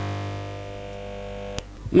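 Computer speakers buzzing with a steady, many-toned hum, picked up as interference from a running vacuum-tube Tesla coil when its capacitor is connected to one tap of the coil. A sharp click starts the buzz, and another click about one and a half seconds in cuts it back to a fainter hum.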